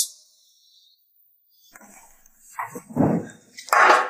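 A woman coughing and choking after chugging red wine from the bottle: a few harsh coughs that build up, the loudest near the end.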